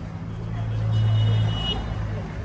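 Low hum of a motor vehicle's engine that swells for about a second and then eases off, with a faint thin high tone over its loudest part.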